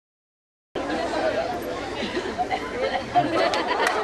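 Several people chattering and talking at once, starting abruptly under a second in after dead silence, with a few sharp clicks near the end.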